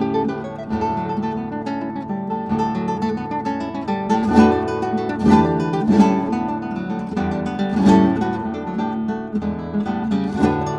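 Solo classical guitar playing a lively Spanish zapateado, fast plucked runs broken by hard-struck accented chords through the middle of the passage.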